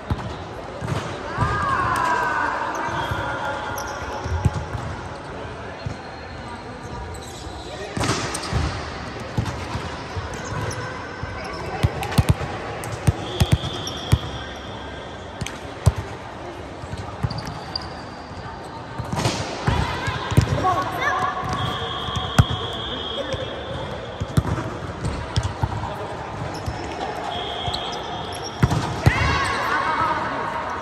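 Volleyball rally on an indoor court: a volleyball being struck and hitting the floor in several sharp slaps and thuds, with players shouting calls between them.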